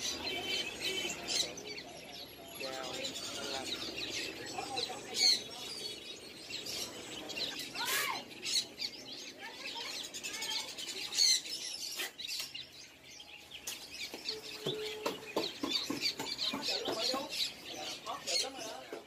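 Many caged songbirds chirping and twittering at once, in short overlapping calls, with a few sharp clicks among them.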